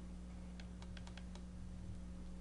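Faint, irregular clicking of typing on a laptop keyboard, a handful of keystrokes clustered in the middle, over a steady low hum.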